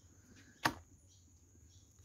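A single sharp click about two-thirds of a second in, at a clay comal over a wood fire where tortillas are cooking; otherwise only quiet background.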